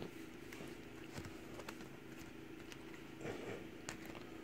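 Quiet room tone: a steady low hum with faint light clicks, about two a second, and a soft short sound about three seconds in.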